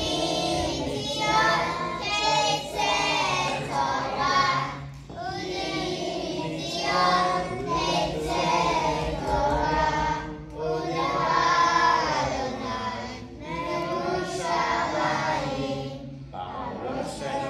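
A group of young children singing a song together, in sung phrases of a few seconds each with short breaths between them.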